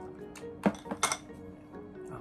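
A few sharp clinks of an eating utensil against a dish, the loudest about two-thirds of a second in and two more close together near the middle, over background music.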